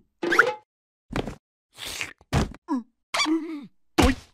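Cartoon larva character making short grunts and effort noises, with several soft thumps and plops between them as it moves onto the box.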